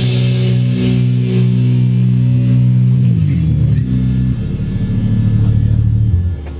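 A rock band ends a song with a last drum hit. An amplified electric guitar note is left ringing out, slides down in pitch about three seconds in, holds lower, and is cut off at the end.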